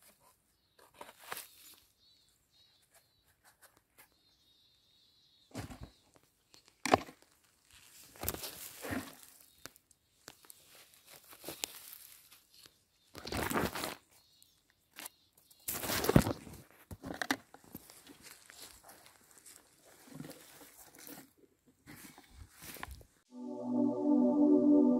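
Lichen and needle litter rustling and crunching in irregular bursts as a hand parts the lichen and twists a boletus mushroom out of the ground. Music starts about a second before the end.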